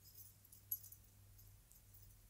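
Near silence, with a few faint, light ticks and rustles of twine being drawn through the punched holes of a game-board book cover during stitching; one sharper tick comes a little under a second in.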